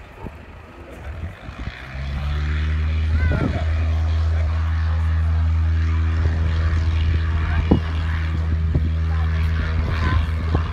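Light propeller aircraft's piston engine coming up to full power about two seconds in and then running steadily, a low, even drone as it makes its take-off run.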